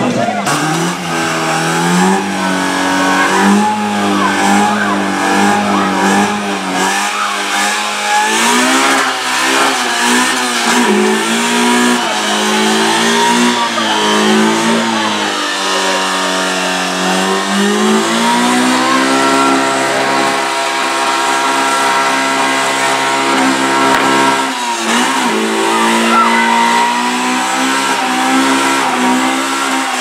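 Car engine revving hard at high rpm during a burnout, with the hiss of spinning, smoking tyres. The revs rise and fall through the first half, then climb and are held fairly steady, with a brief drop about 25 seconds in.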